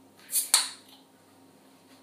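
Crown cap being prised off a glass beer bottle with a bottle opener: a brief hiss, then a single sharp click as the cap comes free, about half a second in.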